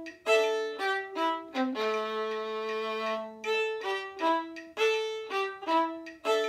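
Solo violin playing a lively passage of short, detached bowed notes, broken near the middle by one note held for about a second and a half.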